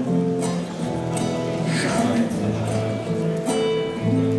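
Acoustic guitar playing a chord accompaniment on its own between sung verses of a sea ballad, the notes held and changing every half second or so, amplified through a stage PA.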